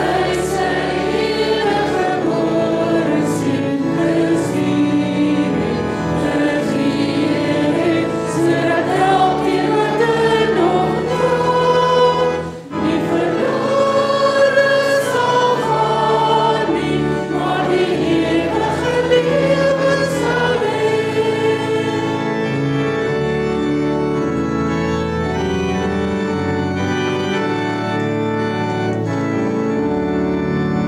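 Church worship team of women's voices singing an Afrikaans worship song in harmony over acoustic guitar and bass. The singing stops about three quarters of the way through, leaving held sustained chords.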